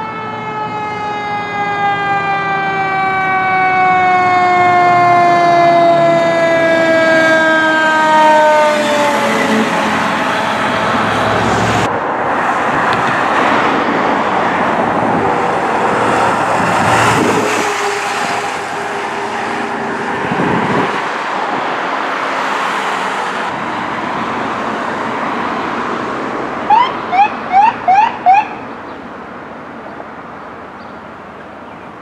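A fire engine's siren winds slowly down in pitch over the first nine seconds, one falling wail in the way of a mechanical siren coasting down. It is followed by the engine and road noise of passing emergency vehicles. Near the end come five quick rising siren chirps in rapid succession.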